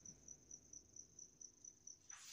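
Near silence with a cricket chirping faintly: a thin high-pitched pulse repeating evenly about five times a second.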